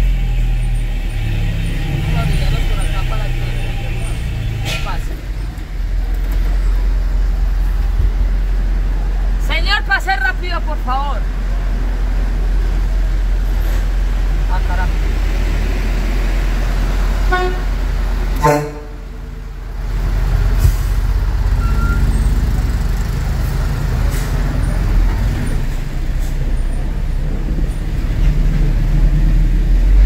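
Truck engine running at low speed, heard from inside the cab, a steady low rumble. A brief wavering higher-pitched sound rises over it about ten seconds in.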